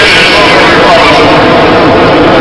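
A man's voice reading a speech through a public-address system, loud and steady and half-buried in a dense noisy haze.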